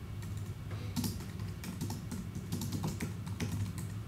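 Typing on a computer keyboard: a quick, irregular run of keystrokes as a password is entered.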